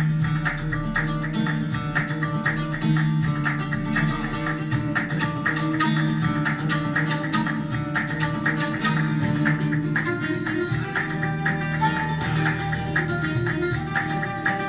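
Flamenco guitar music: an acoustic guitar playing a steady stream of quick plucked notes.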